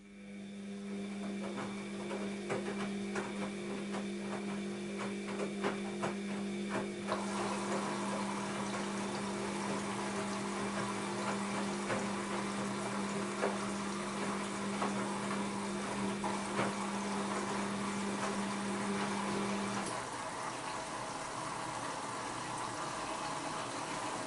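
Bosch WAB28220 washing machine taking in water during its wash cycle: a click, then water rushing into the drum over a steady hum. The hum cuts off about four-fifths of the way through while the water sound carries on, getting fuller partway in.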